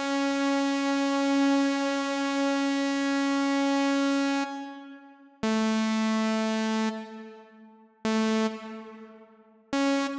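Zebra HZ software synthesizer playing a bright, buzzy note through its Rev1 reverb module. One note is held about four and a half seconds, then three shorter notes sound a little lower in pitch, each leaving a reverb tail that fades out. The reverb's LFO speed, which modulates its feedback and range, is being turned.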